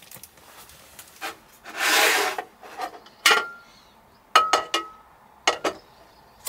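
A metal hot sandwich maker being handled on a tabletop: a rough scraping rub about two seconds in, then sharp metal clinks, a couple with a brief ringing note, at about three seconds and in a quick cluster a little later.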